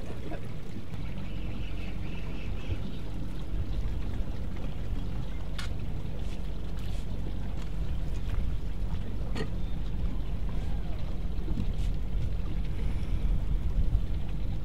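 A boat's motor running steadily, a low hum, with a couple of brief sharp clicks partway through.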